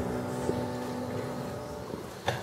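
A piano chord and a held bowed cello note slowly fading away, with a faint click about half a second in.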